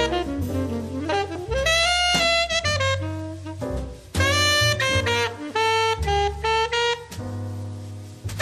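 Alto saxophone playing a line of long held notes with slides between them, over double bass, in a small-group jazz recording, with a brief break about four seconds in.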